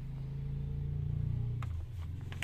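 A low, steady engine hum that swells a little and eases off near the end, with a single sharp click shortly before it eases.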